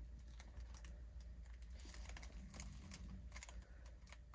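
Faint rustling with an irregular run of light clicks and taps as a mesh amenity bag holding towels and plastic-wrapped items is handled and hung up.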